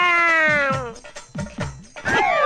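A long wailing cry, held with a slight rise and fall and ending about a second in, laid over comic film music with deep drum hits.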